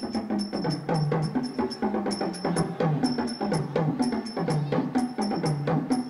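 Live hand drums, a row of small bongo-style drums and a barrel drum, playing a quick steady rhythm with sharp high strokes, the low drum note sliding in pitch about twice a second.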